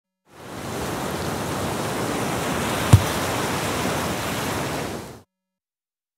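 A steady rushing noise that fades in, holds level, and stops about five seconds in, with one sharp thump about three seconds in.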